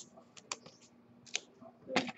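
Scattered light clicks and taps of trading card packs and cardboard boxes being handled on a table, with a few louder handling sounds near the end.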